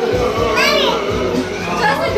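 Background music with a steady beat, over which a young child gives a high, excited squeal that rises and falls about half a second in, with more small child vocalising near the end.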